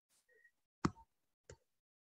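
Two short, quiet clicks about two-thirds of a second apart: a stylus tapping and drawing on a tablet screen.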